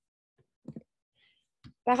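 A near-silent pause broken by two faint, short clicks, about two-thirds of a second in and again just before the woman's voice resumes near the end.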